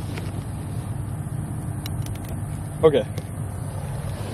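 A steady low rumble with a few faint light clicks, and a voice saying 'Okay' near the end.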